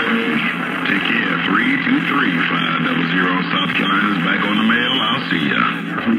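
Received audio from an SR-497HPC radio's speaker: the steady, narrow-band sound of distant stations on channel 28, with wavering voice-like and music-like sounds but no clear words.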